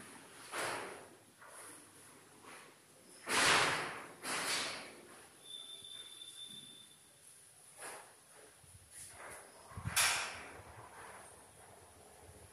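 Scattered short scuffing rustles from walking and handling a phone camera, the loudest about three and a half and ten seconds in, over a faint steady high whine.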